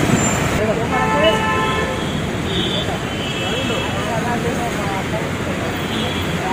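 Steady road traffic noise with vehicle horns sounding briefly, first about a second in and then a couple more times, with faint voices in the background.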